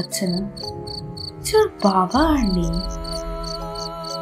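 Cricket chirping ambience, short high chirps repeating about three times a second, over a low held music drone, with a brief voice-like sound about two seconds in.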